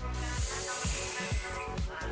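A hiss of air and vapour drawn through an e-cigarette's dripping atomizer as the coil fires, lasting about a second and a half, over background music with a steady beat.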